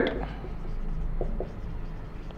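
Marker pen writing on a whiteboard: faint strokes with a few light ticks as the letters are formed.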